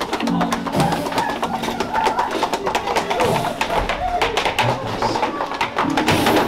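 Music with quick, dense percussion throughout, with voices mixed in underneath.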